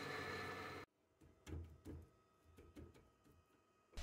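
Small metal lathe running, its tool taking a finishing cut on mild steel, a steady machining noise that cuts off suddenly under a second in. Then near silence with a few faint soft knocks.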